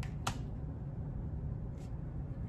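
A sharp click about a quarter second in and a fainter one near the end, over a low steady hum.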